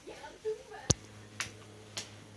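A single sharp click a little under a second in, the loudest sound, followed by a lighter click about half a second later, after a short voice sound. A low steady hum starts right after the first click.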